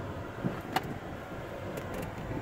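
Steady low rumble of a car heard from inside the cabin, with two faint clicks a little before the middle.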